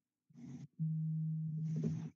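A steady low buzzing tone with a few overtones on a video-call audio line, starting just under a second in, after a brief burst of garbled sound. Faint broken-up voice fragments come over it near the end, typical of a breaking-up online-meeting connection.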